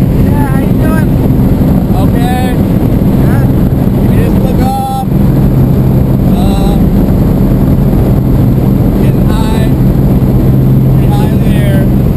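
Small propeller plane's engine droning loudly and steadily, heard from inside the cabin, with voices faintly over it. The drone briefly dips about five seconds in.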